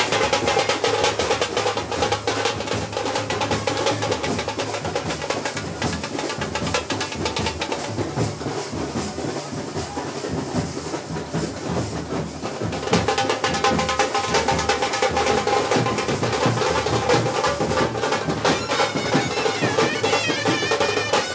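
Procession music with rapid, dense drumming under a held melodic line. The drumming eases off for a few seconds in the middle, then comes back in full.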